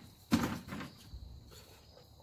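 A loud knock of a hard object landing on a pile of junk furniture about a third of a second in, followed by a few smaller knocks. Crickets chirp faintly and steadily throughout.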